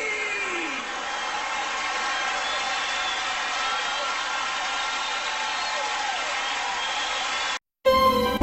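Live theatre audience applauding and cheering in a steady wash of clapping and whoops. It follows the drawn-out end of a shouted "Well, excuse me!" and cuts off suddenly near the end.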